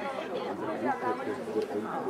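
Indistinct chatter of several people talking at once, with no words standing out.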